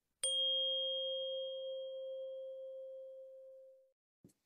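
A single chime struck once, ringing on a steady tone and fading away over about three and a half seconds: a transition sound between segments.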